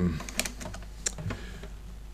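A few faint, scattered light clicks and taps over a steady low electrical hum.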